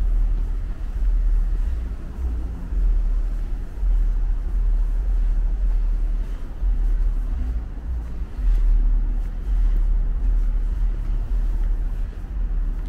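City street traffic with a loud, uneven low rumble that swells and fades every second or two.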